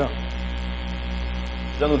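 Steady electrical mains hum, a low, unchanging buzz, with speech starting again near the end.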